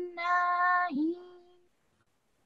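A child's voice chanting Quran recitation, holding long steady notes on one pitch with a short dip in the middle, then stopping well before the end. The teacher hears the last word as faulty, with an alif wrongly added after the noon of 'jannatin'.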